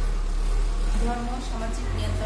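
A woman's voice starts speaking about a second in, over a steady low hum.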